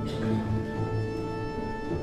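Russian folk orchestra of balalaikas and domras playing, with held notes over a bass that pulses about twice a second.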